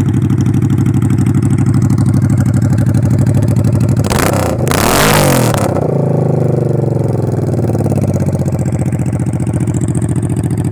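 1985 Honda Shadow 500's V-twin running on straight pipes with no mufflers, idling with a loud, even beat. About four seconds in it is revved once, briefly, then drops back to idle.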